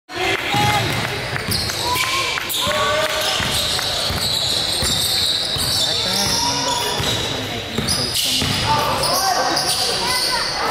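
A basketball being dribbled on a hardwood gym floor during live play, with players and spectators shouting, all echoing in a large gymnasium.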